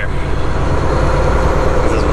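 Volvo semi truck's diesel engine running steadily as the truck rolls slowly at low speed, a low, even hum heard from inside the cab.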